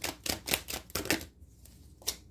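Tarot cards being shuffled in the hands: a quick run of card flicks, about eight a second, that stops a little over a second in, followed by a single faint click near the end.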